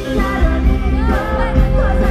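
Live pop-rock band music with an amplified female lead vocal over a steady bass beat. A long note is held through it.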